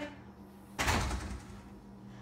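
A door being shut: a single heavy sound about a second in that dies away within half a second.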